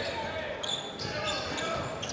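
Basketball arena ambience during live play: a crowd murmuring and a basketball being dribbled on the hardwood court.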